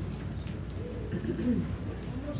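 A congregation getting to their feet: rustling and shuffling of clothing and chairs, with faint low voices.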